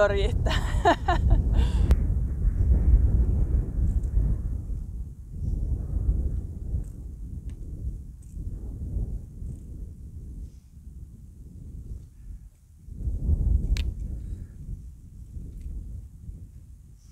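Wind buffeting the microphone in gusts, a low rumble that swells and fades, strongest just after the start and again near the end. One sharp click comes near the end.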